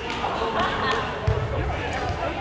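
Indistinct voices of players and spectators talking, with a dull thump a little over a second in.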